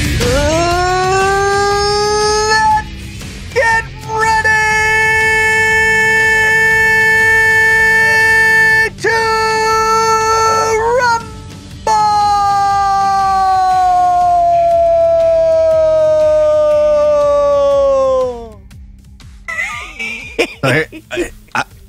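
A man's voice holding one long, loud, high note like a howl, rising at the start and broken by three short breaks. Its pitch slides slowly down through the last several seconds before it trails off. It is a drawn-out yell held for as long as breath allows.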